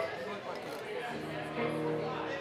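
Background chatter of a bar crowd with faint music under it, a few notes held steady.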